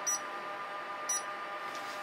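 Faint regular ticking, about once a second (two ticks), from the guessing-game app's timer on the phone, over a faint steady hum.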